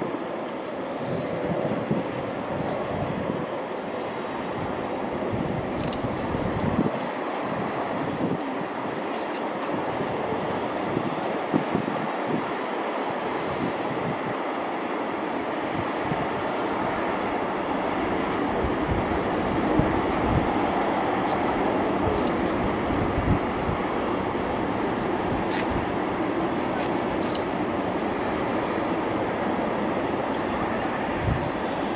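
Wind buffeting the microphone in irregular low thumps over a steady rushing noise.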